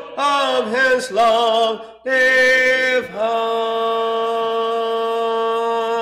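A man's voice leading a hymn sung a cappella, ending its final phrase on one long held note from about halfway through.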